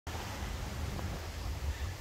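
Wind buffeting the microphone: a steady low rumble with a faint hiss over it.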